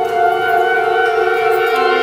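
Woodwind quintet playing a chord of long held notes; a lower note comes in near the end.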